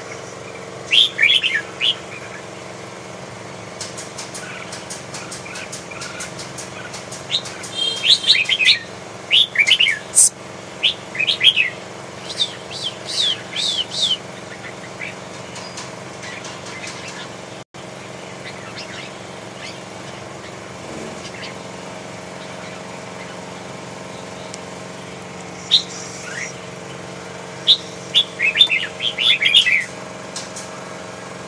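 Caged red-whiskered bulbuls chirping in short bursts of quick rising and falling notes: briefly about a second in, a busy run through the middle third, and again near the end. A few sharp clicks come among the calls, over a steady low background hum.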